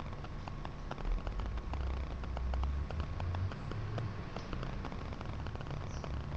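Quiet handling noise: many light, irregular ticks and faint rustling from a gold leaf booklet and brush being worked by hand, with a low rumble from about one to three and a half seconds in.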